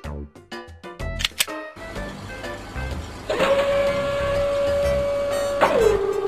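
Short plucked cartoon music notes, then a cartoon mechanical sound effect of a mobile library truck's side panel lifting open: a hissing whir, joined about halfway through by a steady held whine that stops just before the end.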